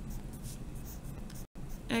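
Pen writing on lined notebook paper: a light scratching of short strokes, with a momentary dropout to silence about one and a half seconds in.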